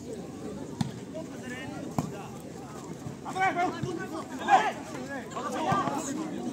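Volleyball struck twice by hand, two sharp smacks about a second apart early on, under a steady murmur of crowd voices. From about halfway, players and spectators shout, loudest just past the middle.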